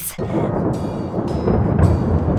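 Rumbling thunder sound effect, starting abruptly and carrying on as a steady low rumble.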